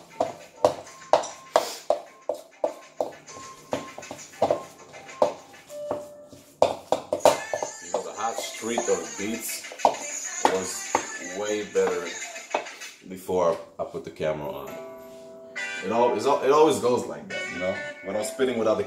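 Hip-hop instrumental beat with guitar playing from a phone's speaker, opening with sharp, evenly spaced drum hits about two or three a second for the first six seconds, then fuller with a voice over it.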